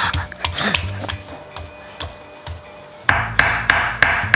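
A large kitchen knife chopping smoked beef on a wooden cutting board: a string of sharp knocks, spaced out at first and quicker near the end. Background music runs underneath and grows louder about three seconds in.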